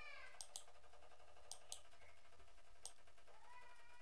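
Faint, high-pitched animal cries: one falling call that trails off at the start, and a longer call beginning about three seconds in. A few light clicks come between them.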